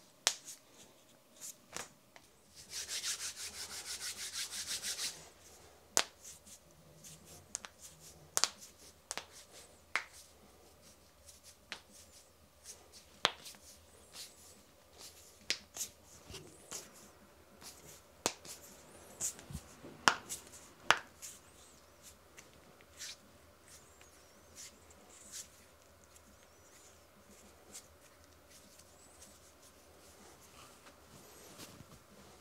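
Knuckles and finger joints cracking: scattered sharp pops throughout, with a dense run of rapid crackling for a couple of seconds near the start, and the two loudest pops about two-thirds of the way through.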